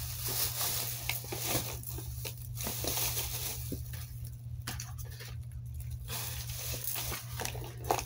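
Plastic shopping bag rustling and crinkling in irregular bursts as items are pulled out of it, over a low steady hum.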